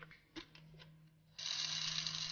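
A few sharp clicks from a plastic flip-top jar lid, then, about one and a half seconds in, coarse pink salt crystals suddenly start pouring out of a plastic jar into a salt grinder, a dense steady rattle.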